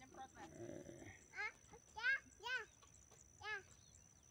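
A small child's wordless vocal calls: four short rising-and-falling cries spread over a couple of seconds, after a low murmur near the start.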